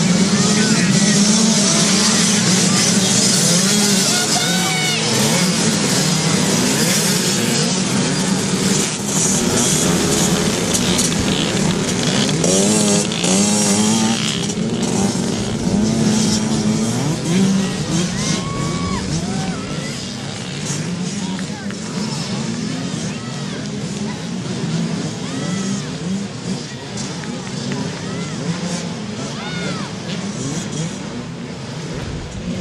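A pack of small youth dirt bikes revving and accelerating off the start line together, their engines rising and falling in pitch through the throttle and gear changes. Loud at first, they thin out and fade as the bikes pull away.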